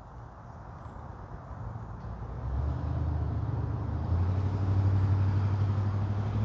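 A low, steady engine hum that grows louder from about two seconds in and then holds.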